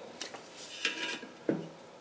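Faint light metallic clinks and a soft scrape about a second in, as a steel tape measure blade is moved and laid across the lip of a steel wheel rim.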